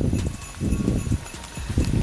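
Footsteps going down a rocky, stone-strewn path: irregular low thuds of several steps.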